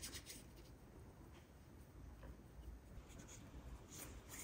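Faint rubbing of hands together, working in hand sanitiser gel.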